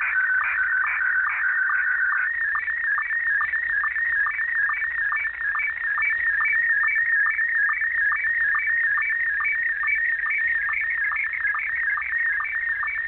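A shortwave radio signal heard in upper sideband: a steady electronic tone in the middle of the voice range, pulsing several times a second, that steps up slightly in pitch about two seconds in.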